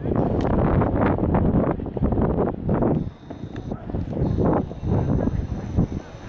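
Wind buffeting the camera microphone in uneven gusts, with people chatting in the background. A faint steady high buzz sets in about halfway through.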